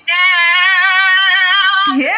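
A woman's voice singing one long high note with vibrato, heard through a phone's speaker; it breaks off just before the end.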